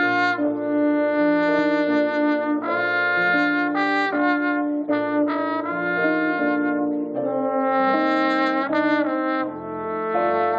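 Trombone playing a jazz solo: a line of held notes that change pitch every half second to a second or so, with the band's low sustained notes underneath.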